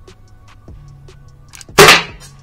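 A single sharp, loud shot from a CO2-powered less-lethal launcher pistol about 1.8 seconds in, with a brief ringing tail, over background music.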